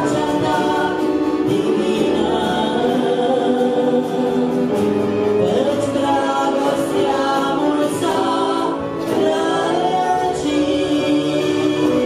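Romanian Christian song: several voices singing together in harmony over instrumental accompaniment, at a steady level.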